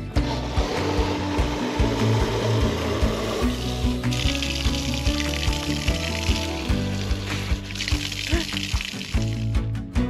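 Water running in a steady stream from the brass spout of a brick drinking fountain into a plastic bottle, stopping near the end, with background music playing over it.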